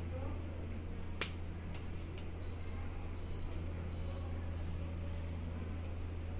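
Three short, high electronic beeps, evenly spaced about three-quarters of a second apart, come after a single sharp click, over a steady low hum.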